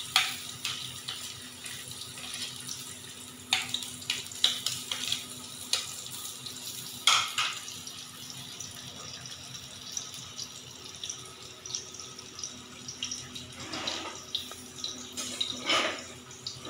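Sliced onions sizzling in hot oil in a metal pot: a steady hiss broken by irregular crackles and pops.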